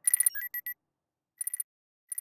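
Electronic sound effect of an animated logo: clusters of high, rapid digital beeps. There is a busy cluster at the start, then a short burst of quick pulses about a second and a half in.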